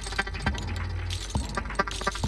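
Live experimental electronic percussion from a modular synthesizer rig: dense, irregular metallic clicks and clinking hits over a steady low drone.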